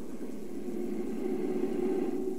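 A steady low drone with a single held tone that fades in about half a second in and swells slightly toward the end.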